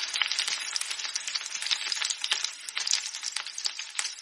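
Shredded cabbage and green capsicum sizzling as they are stir-fried in a steel kadai, with a metal spatula scraping and clicking against the pan in quick, irregular strokes.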